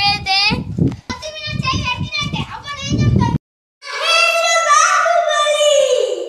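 A child speaking in a high voice for about three seconds, then a rooster crowing in one long drawn-out call that drops in pitch as it fades.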